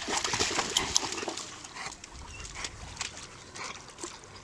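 A dog whining, loudest in the first second or so, then quieter.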